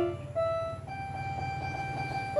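Electronic keyboard played one note at a time. A note struck just before fades out, then softer single notes come in about a third of a second and just under a second in, the last one held.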